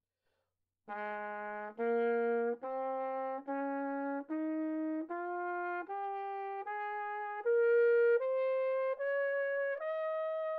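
Trumpet playing a B-flat major scale up a twelfth, from the bottom B-flat to top F. It plays twelve separate, evenly held notes of just under a second each, rising step by step, starting about a second in. The top F is still sounding at the end.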